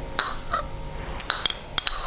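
Metal spoon clinking against a small ceramic bowl as food is stirred and picked at, about half a dozen light clinks at irregular intervals.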